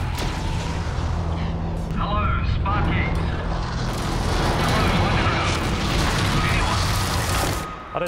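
Dramatized coal-mine explosion: a loud, sustained deep rumble and rushing roar that drops away shortly before the end, with a voice heard briefly about two seconds in.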